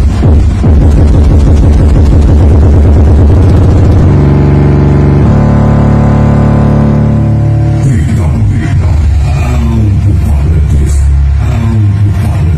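Loud, bass-heavy electronic paredão-style music played at high power through Triton car-audio loudspeakers driven by an amplifier on a test bench. A long held low tone sustains through the middle, then pulsing bass notes resume.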